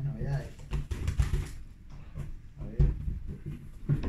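Plastic lure packaging crinkling and rustling as packets are handled and pulled out of a cardboard box, with a dull thump near three seconds in.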